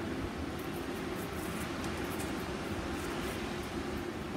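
Steady low hum and hiss of background noise, with no clear single event.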